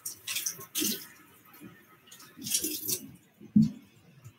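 Cold tap water from a kitchen faucet splashing over a lock of raw wool as it is rinsed and squeezed by hand in a stainless steel sink, coming in short uneven spells, with one sharper sound shortly before the end.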